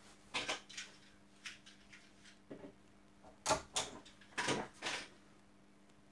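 Close handling noise from small plastic parts and cable wires: a run of short scrapes and clicks as the conductors are worked into an RJ45 keystone connector, louder in the second half.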